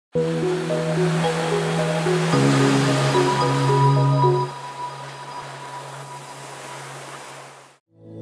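Short intro music over the sound of ocean surf; the music stops about halfway through and the surf carries on more quietly, fading out just before the end.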